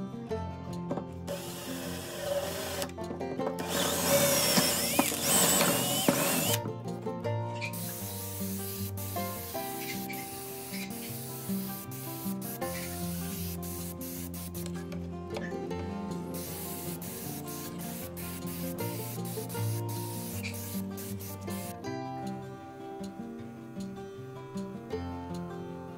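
Gravity-feed compressed-air spray gun hissing in long bursts, with a short break in the middle, over acoustic guitar background music. A louder rasping noise comes a few seconds in.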